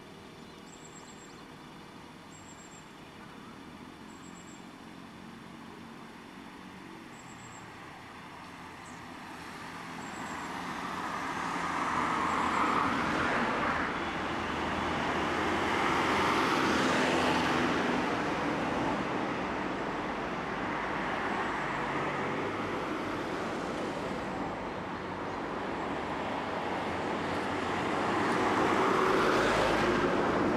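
Road traffic passing: fairly quiet at first, then from about a third of the way in a rushing noise of passing vehicles swells and fades several times, loudest near the end.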